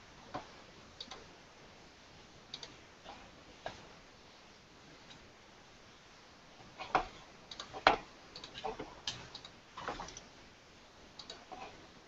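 Faint, irregular clicks and taps of a computer mouse and keyboard picked up through a video-call microphone, a few at first and then a busier run in the second half, the loudest about eight seconds in.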